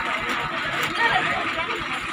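Indistinct chatter of several people talking at once inside a bus, with no clear words.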